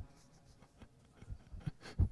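Faint rustling with a few soft clicks and knocks, the loudest near the end.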